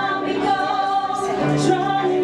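Three women singing a song in close harmony, holding sustained notes, with piano accompaniment.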